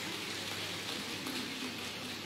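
Crowd applauding steadily: an even clatter of many hands clapping.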